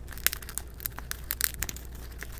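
Syrian hamster gnawing a peanut in its shell close to the microphone: a quick, irregular run of sharp crunches and cracks as the shell breaks.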